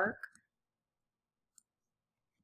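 The last of a woman's spoken word, then near silence broken only by one faint click about a second and a half in.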